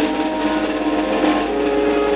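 Wind band of brass and saxophones playing loud held chords, the notes shifting about one and a half seconds in.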